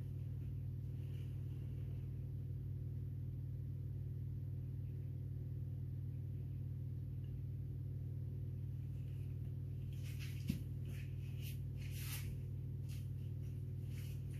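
A steady low hum, with a few faint soft scraping strokes and a small click about ten seconds in as a small knife works wet acrylic paint on the canvas.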